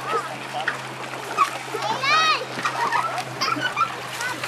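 Water splashing as people swim and wade, with voices calling out in short bursts and one longer call about halfway through.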